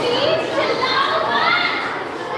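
Children talking and calling out at once: overlapping chatter of young voices with no single clear speaker.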